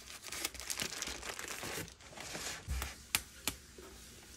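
Plastic bag crinkling and rustling as a block of pottery clay is handled in it, with a soft low thud about two-thirds of the way through and two sharp clicks near the end.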